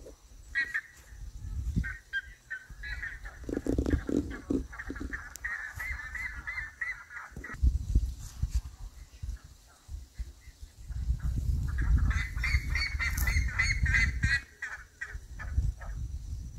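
A flock of buff-necked ibises (curicacas) calling in flight: two bouts of loud, rapid repeated honking notes, about five a second. The first comes a few seconds in and the second near the end.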